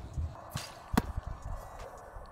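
A football fired from a passing machine: a short whoosh, then about half a second later a single sharp smack as the ball hits the catcher's peanut-butter-coated hands.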